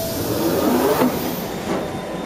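London Underground train heard from inside the carriage: a steady, dense running noise with faint bending tones.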